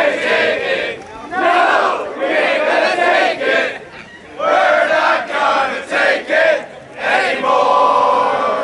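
A crowd of voices shouting and yelling together in several loud bursts, with brief lulls between them.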